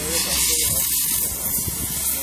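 Gas torch hissing steadily as its flame is held against a buried pipe.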